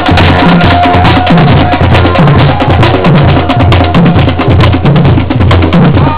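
A marching band drumline playing a loud cadence: bass drums and tenor drums, with steady low beats under rapid sharp stick strokes.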